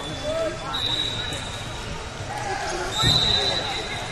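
Referee whistles blowing in a large wrestling hall: one steady, shrill blast about a second in and a longer one near the end, over the chatter of voices in the hall. A dull thud comes about three seconds in.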